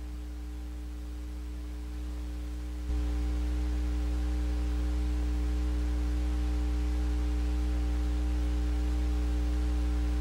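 Steady electrical hum with a stack of buzzing overtones over faint hiss, stepping louder about three seconds in.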